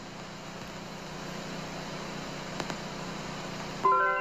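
Steady hiss of static with a low hum underneath, growing slightly louder. Just before the end a held musical chord of steady tones starts.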